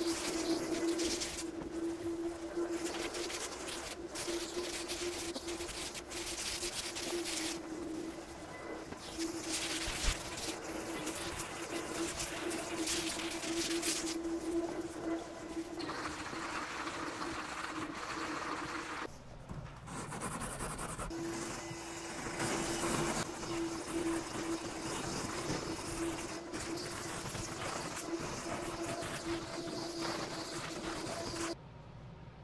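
Shop vacuum running steadily while an 80-grit dust-collecting sanding block is rubbed by hand over the epoxy-coated fiberglass of a kayak hull, each stroke a hiss that swells and fades over a second or two. The vacuum's hum drops out briefly about two-thirds of the way through.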